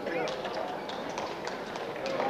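Unintelligible voices of spectators talking, with a few sharp clicks of a table tennis ball striking bats and table during a rally.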